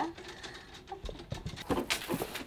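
A few soft knocks and thuds, then a sharp click, as studio gear such as a backdrop bar on its stand is handled.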